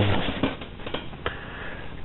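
Low room noise with a few faint, light clicks and taps, typical of a handheld camera being moved around.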